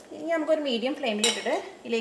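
A single sharp clink of metal kitchenware a little over a second in, heard over a woman speaking.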